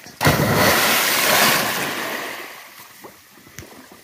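A person's body plunging into a pond with one big splash about a quarter second in. The rush of churned water then dies away over the next two seconds.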